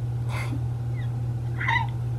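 A young woman breathing softly, then giving a short, stifled breathy laugh near the end, over a steady low hum.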